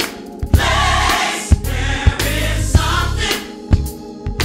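Gospel choir singing with full voices over instrumental accompaniment, with strong low bass notes and sharp beats about once a second.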